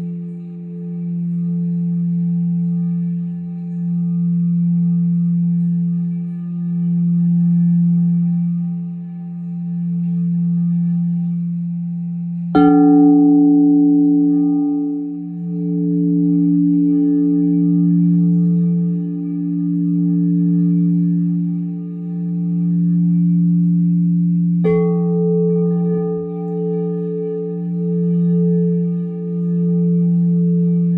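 Crystal singing bowls ringing: a steady low tone that swells and fades in a slow pulse. A bowl is struck about twelve seconds in and another near twenty-five seconds, each adding a new, higher ringing tone over the drone.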